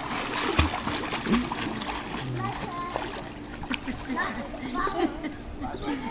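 Pool water splashing as a swimmer kicks and strokes along the side of a swimming pool. The splashing is busiest in the first couple of seconds, then tails off.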